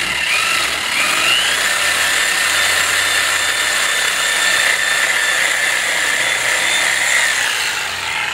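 Corded reciprocating saw cutting through the base of a Christmas tree trunk, running steadily for about seven seconds. Its whine climbs as the motor comes up to speed at the start and dies away near the end as the cut finishes.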